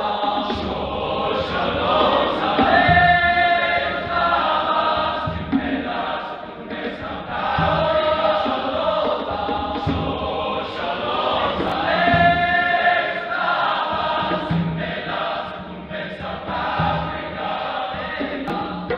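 Large men's choir singing sustained chords in full voice, with conga drums knocking underneath.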